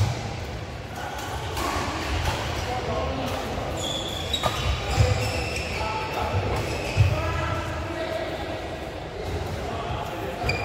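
Badminton rackets smacking shuttlecocks, with sharp hits at the start and about five and seven seconds in, amid footfalls and shoes squeaking on the court floor, all echoing in a large hall. Indistinct players' voices run underneath.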